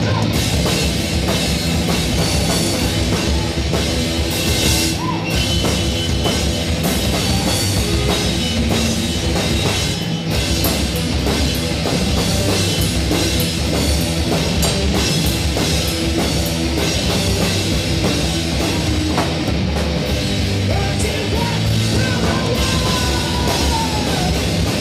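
Live rock band playing: electric guitars over a drum kit with cymbals, loud and steady.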